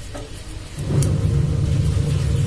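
A motor vehicle engine running nearby. Its steady low rumble swells up loud just under a second in and then holds.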